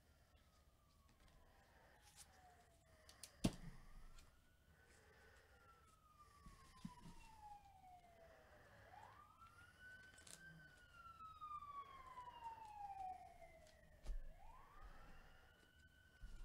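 Faint siren wailing, its pitch rising quickly and then falling slowly in a cycle of about five seconds. A single sharp click about three and a half seconds in.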